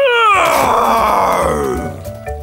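Cartoon dinosaur roar: one long roar that falls steadily in pitch and fades out over almost two seconds.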